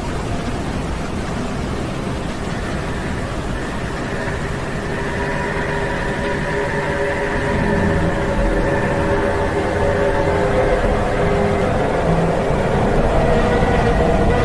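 Dark ambient noise soundscape: a dense, rumbling wash of noise, with several faint sustained tones fading in about four seconds in and the whole slowly growing louder.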